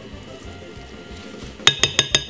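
Quiet background music, then near the end a metal spoon clinks sharply against a glass mixing bowl three times, each clink ringing briefly.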